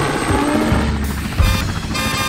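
Helicopter rotor chopping in a fast, even rhythm, a sound effect that comes in about one and a half seconds in, over background music.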